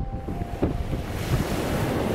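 Heavy storm surf: large waves breaking and churning in rough seas, a steady rushing noise that grows fuller about a second in.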